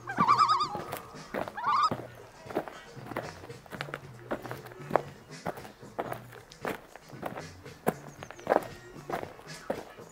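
Footsteps on stone paving slabs at a walking pace, about one and a half steps a second, over background music with a low bass line. In the first two seconds, two loud, wavering high-pitched calls.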